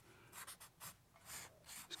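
Black felt-tip marker drawing on paper: a few faint, short strokes.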